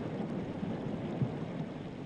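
Shallow stream water splashing and swishing around bare feet wading through it, over a steady running-water hiss, with a few small knocks.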